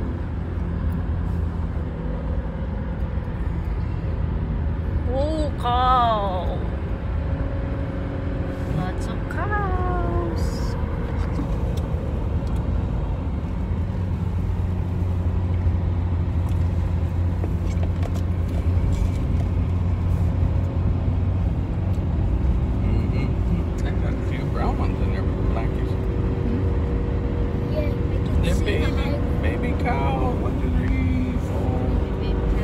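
Steady road noise and engine hum of a car driving, heard from inside the cabin.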